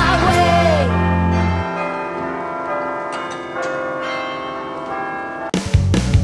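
Background music: a sung phrase ends about a second in and the final chord rings on and fades, with a few struck notes partway through. About half a second before the end, a louder rock track with drums and guitar starts abruptly.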